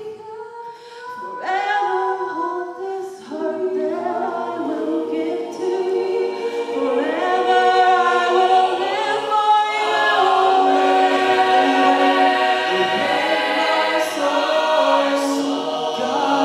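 Mixed-voice a cappella group singing, without instruments. Two women's lead voices come first, then the full group joins in and the sound builds, fuller and louder by the middle.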